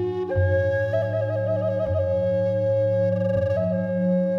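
Native American wooden flute holding a sustained melody over the steady drone of crystal and Tibetan singing bowls. The flute enters just after the start, wavers in a trill through the middle and shifts note near the end, with soft strikes about every one and a half seconds beneath it.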